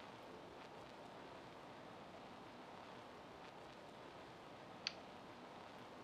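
Near silence: faint steady room tone or microphone hiss, with a single short click about five seconds in.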